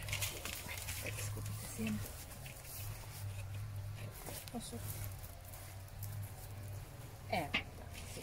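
Light, faint rustling of dry calendula seed heads being stripped by hand, over a steady low hum, with brief faint voices about halfway through and near the end.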